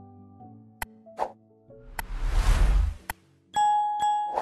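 Subscribe-button animation sound effects over soft background music: a few sharp mouse clicks, a rush of noise lasting about a second in the middle, and a bell chime that rings out near the end.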